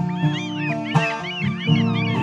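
Acoustic guitar strummed steadily, with many short gull cries layered over it, each call rising and falling in pitch.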